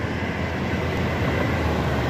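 Road traffic running close by: a steady, low engine-and-tyre rumble that grows slightly louder toward the end.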